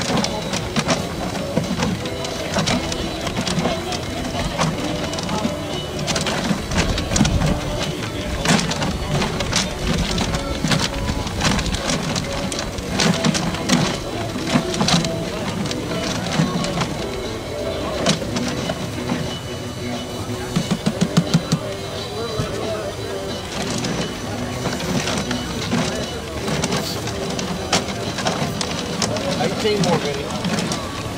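Clear acrylic raffle drum being turned by hand, its load of paper tickets tumbling inside with a steady rustle and many small knocks and clicks, and a brief fast rattle about two-thirds of the way through.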